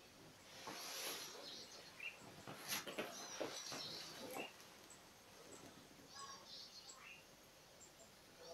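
Faint small-bird chirps in the background, with a soft breath about a second in and a few seconds of light rustling and clicks as the bodies shift on a beanbag cushion.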